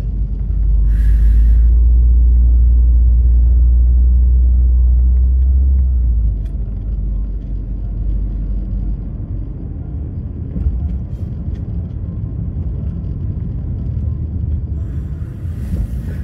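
Car driving, heard from inside the cabin: a steady low road-and-engine rumble, very heavy for about the first six seconds and then settling to a lighter rumble.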